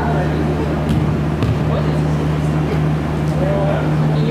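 Indoor futsal play: players' shouts over a steady low hum. There are a couple of sharp knocks around a second in, from the ball being kicked.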